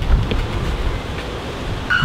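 Wind buffeting the camera microphone outdoors: a steady rushing noise with gusty low rumbles.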